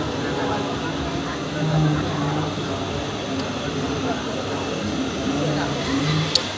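Indistinct voices over a steady, dense background noise, like an outdoor crowd with a mechanical rumble behind it; no words come through clearly.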